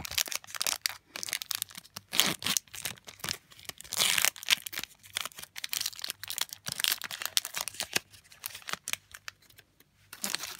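Foil Pokémon TCG booster-pack wrapper being torn open and crinkled by hand: a dense run of sharp crackles and rustles, loudest about four seconds in.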